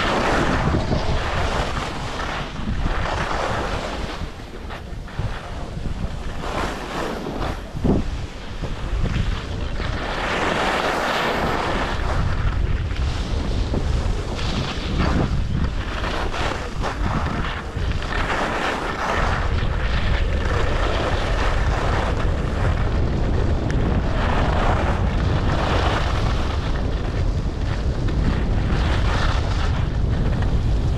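Wind buffeting a skier's action-camera microphone, with the rasp of skis carving and scraping over groomed snow, swelling and fading with each turn. The wind rumble grows heavier about two-thirds of the way through as the skier speeds up.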